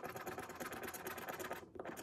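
Scratcher coin scraping the coating off a Florida Lottery $2 "$30 Grand" scratch-off ticket in rapid back-and-forth strokes, with a short pause near the end.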